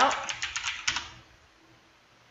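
Typing on a computer keyboard: a quick run of keystrokes over about the first second, which then stops.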